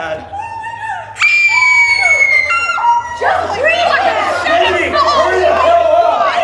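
Several people screaming and yelling without words: one long, high-pitched scream about a second in, then a jumble of overlapping shouts and shrieks from a group.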